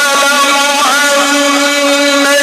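A man's voice reciting the Quran in melodic tajweed style, holding one long, steady note with a short ornamental turn about a second in, amplified through a microphone.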